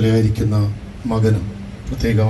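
A priest's voice amplified through a microphone and loudspeaker, in short phrases separated by brief pauses, with a steady low hum underneath.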